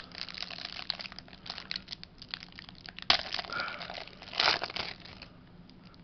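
Thin clear plastic wrapper crinkling and crackling in the hands as trading cards are pulled out of it, in irregular crackles with louder bursts about halfway through and again a second or so later, then quieter near the end.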